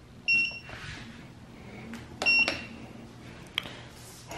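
Best Choice Products treadmill console beeping through its start countdown: two short high beeps about two seconds apart. A faint low hum comes in between them as the belt motor starts, and there is a single click near the end.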